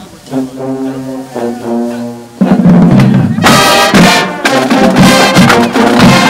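College marching band playing: a soft held brass chord, then a slightly lower one, before the full band comes back in loud about two and a half seconds in, with a bright crash about a second later.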